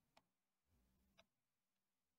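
Near silence, with two faint clicks about a second apart.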